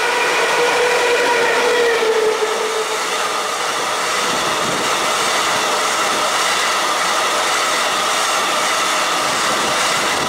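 An EU07 electric locomotive passing close at speed, its whine dropping in pitch as it goes by about two seconds in. The loud rumble and clatter of a long container train's wagons rolling past follows.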